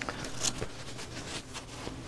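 Faint rustling and handling of a cloth hat as it is turned over in the hands and lifted onto the head, with a few soft brushes about half a second in, over a low steady hum.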